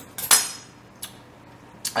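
Metal knife and fork set down on a stone countertop: a ringing metallic clatter of two quick strikes just after the start, then two lighter clicks.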